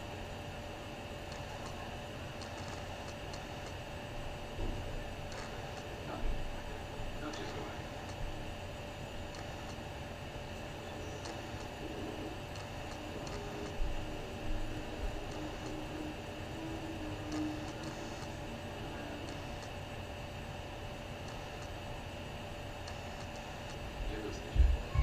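Steady background hum with a thin constant tone, a few soft knocks, and faint indistinct voices in the middle stretch.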